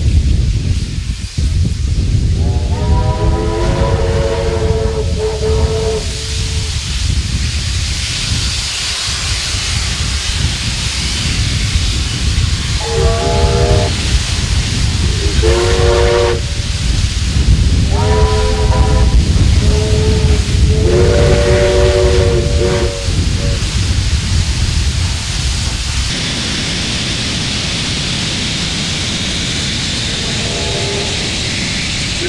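Several steam locomotives setting off together, with heavy exhaust and steam hiss. Their steam whistles sound over it: one long blast about two seconds in, then a string of shorter blasts about halfway through. Near the end the sound settles into a steady rushing hiss.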